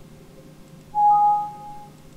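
Computer alert sound as a warning dialog pops up: one steady tone just under a second long starting about a second in, with a fainter higher tone over its first part.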